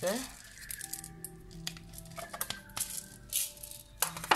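Short, scattered rattles of whole black peppercorns being shaken from their jar into the pot, over background music with long held notes.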